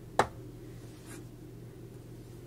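Crochet hook and yarn being handled: one sharp click a moment in, then a soft brief rustle about a second in, over a faint steady hum.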